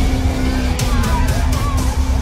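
Horror-trailer sound design: a loud deep rumble under a held low drone, with a woman's frightened cries. In the second half comes a quick run of sharp hits, about five a second.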